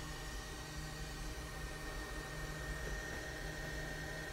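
Steady background hiss with a low hum and a thin, constant high-pitched whine. No distinct event stands out.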